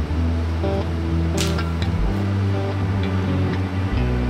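Background music with sustained low bass notes and held chords, the bass shifting about halfway through. A brief hiss cuts across the music about a second and a half in.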